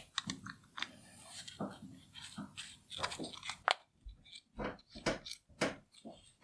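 Small steel and brass parts handled close up: a dial test indicator being fitted into its dovetail holder and the knurled brass lock nut worked to lock it. A run of light, irregular clicks and scrapes, sharper and more spaced out in the second half.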